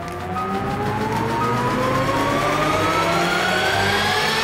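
Hyperspace Mountain roller coaster train being launched up its inclined tunnel: a steady rising whine over rushing noise, growing slightly louder as the train speeds up.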